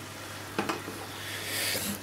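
Chicken breast and Brussels sprouts in a honey caramel sauce sizzling softly in a pan on low heat. There are a couple of light utensil knocks a little over half a second in, and the sizzle grows louder near the end.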